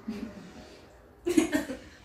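A person coughs once, briefly, about a second and a half in.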